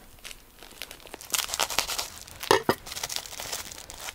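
Plastic bag crinkling and rustling in the hands as its knot is worked open, with a sharper crackle about two and a half seconds in.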